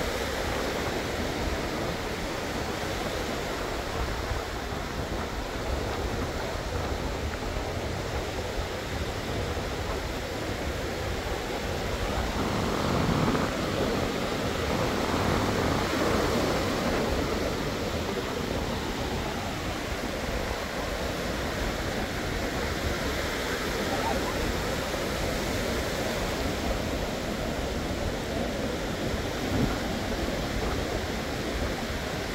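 Ocean surf breaking and washing up a sandy beach in a steady wash of noise, swelling louder about halfway through as a wave breaks close by.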